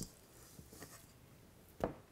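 Faint handling sounds of a silicone spatula scooping thick caramel frosting from a stainless steel mixing bowl and setting it on a cake in a glass baking dish: a short tick at the start and one brief louder knock near the end.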